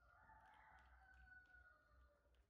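A rooster crowing faintly: one long call that starts suddenly and sinks slightly in pitch over about two seconds.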